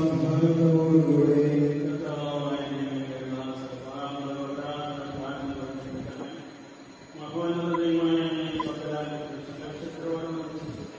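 A man's voice chanting a prayer in long, held notes, one phrase fading away about seven seconds in and a new one starting just after.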